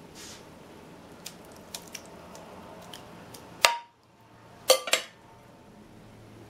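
Metal serving spoon clinking against a glass bowl and glass baking dish as browned ground meat is spooned out. A few light taps come first, then a sharp ringing clink a little past halfway and two more clinks close together about a second later.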